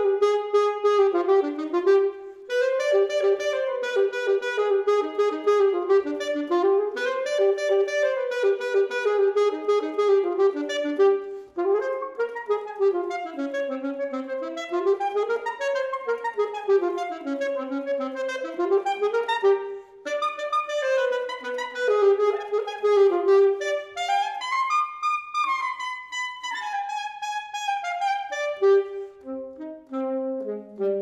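Solo alto saxophone playing: a repeated note in its middle range, with fast runs sweeping up and down around it, broken by a few brief pauses for breath.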